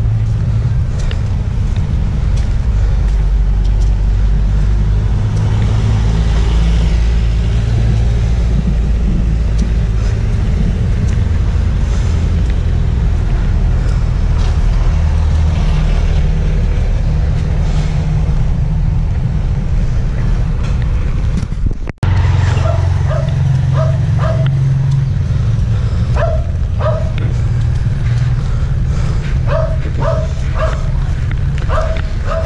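Street ambience with a steady low rumble. After a brief dropout about two-thirds of the way in, a dog barks repeatedly in short barks to the end.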